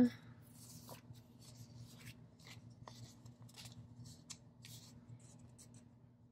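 Faint paper rustles and small scrapes from a sticker sheet being handled over a paper planner page, in scattered short ticks.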